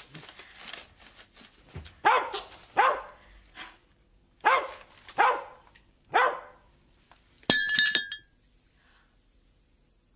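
A dog barks five times in quick succession, then, about seven and a half seconds in, a china teapot smashes in a short clattering crash with ringing tones, followed by quiet.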